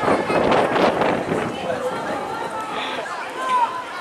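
Voices shouting on a football pitch during play: short calls from several people, with a rush of louder noise over the first second and a half.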